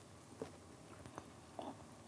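Faint chewing of a mouthful of baked pasta cake with chopped nuts, a few soft crunches spaced out, with a dense, hard texture like eating a bag of stones.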